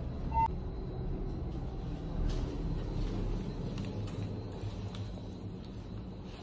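Elevator car running, a steady low rumble, with one short electronic beep about half a second in.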